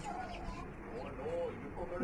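Quiet bird calls, short curved cooing notes and a few high chirps, over faint distant voices.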